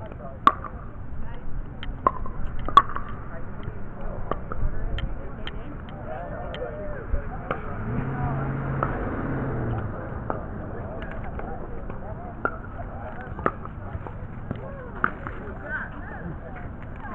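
Pickleball paddles striking a hard plastic ball during a rally, a series of sharp pocks every second or so, clustered in the first few seconds. A low steady hum sounds for about two seconds near the middle, with faint voices in the background.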